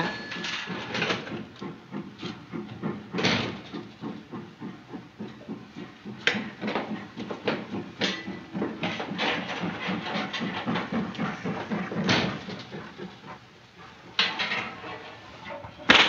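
Irregular light knocks and clinks on a hard floor: footsteps in heels, a teacup and saucer set down and a wooden chair moved, with a louder knock every few seconds.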